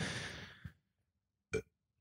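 A man's breathy exhale fading out over about half a second, then a single short throaty vocal noise about a second and a half in.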